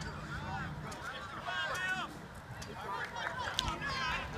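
Distant voices shouting and calling out encouragement, several overlapping, with no words clear.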